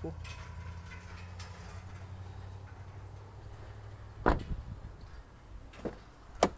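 A pickup truck's rear crew-cab door being shut, one solid slam about four seconds in, over a low steady hum. A smaller click follows near the end, the door handle being worked.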